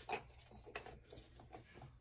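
Faint rubbing and light ticks of a sheet of sublimation print paper being handled and slid across a paper trimmer.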